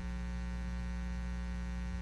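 Steady electrical mains hum with a faint buzz, even and unchanging.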